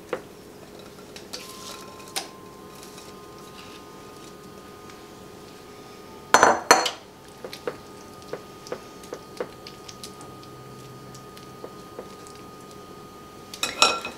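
A spatula scraping and tapping against a glass mixing bowl and a ceramic baking dish, in scattered light knocks. About six seconds in comes one louder clatter as the glass bowl is set down on a stone counter.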